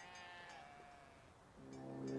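A faint animal call, like a bleat, falling slightly in pitch over most of a second. Near the end a sustained synthesizer chord fades in and grows louder as music begins.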